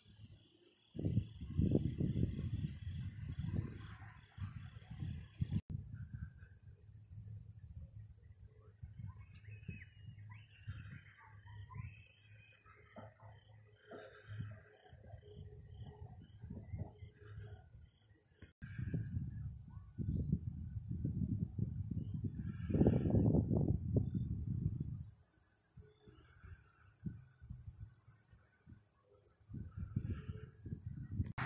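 Wind buffeting the microphone in irregular gusts, loudest near the start and again about two-thirds of the way through. Under it, crickets and other insects chirp steadily.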